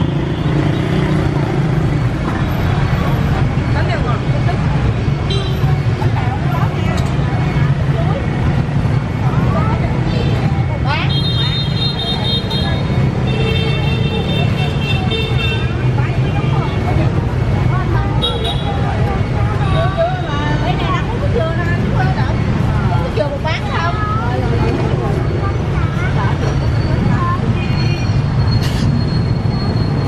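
Steady hum of busy street traffic, mostly motorbikes, with people talking in the background and a few short horn toots around the middle.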